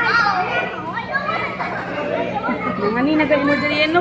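Many children's voices calling out at once and overlapping: an audience shouting answers to a question. A man's voice cuts in near the end.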